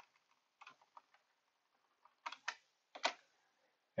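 A few isolated clicks of computer controls: two faint ticks in the first second, then two pairs of sharper clicks in the second half.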